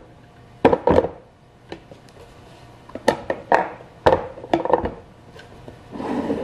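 The heavy cast-iron compressor of a General Electric ball-top refrigerator being shifted and set down on a wooden workbench: a series of separate knocks and thumps of the metal housing against the wood.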